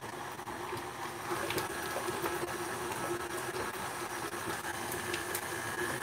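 KitchenAid stand mixer motor running steadily with a constant hum, its paddle beating softened butter in the steel bowl to cream it fluffy and white.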